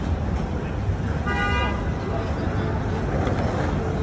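A single short car horn toot about a second in, over a steady rumble of street traffic.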